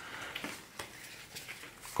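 Faint rustle and a few light clicks of a deck of thick tarot-size playing cards being picked up and fanned out in the hands.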